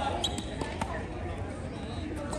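A tennis ball bouncing on a hard court: a few short, sharp knocks in the first second, over a steady low rumble.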